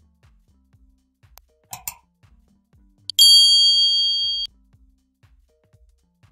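A loud, bright ding sound effect about three seconds in: several steady high tones ring together for just over a second, then cut off suddenly. A pair of short clinks comes just before it, and quiet background music with a soft beat runs underneath.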